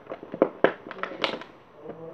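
A quick run of sharp, irregular clicks and crackles, loudest about a second in and dying away by a second and a half: objects being handled close to the microphone.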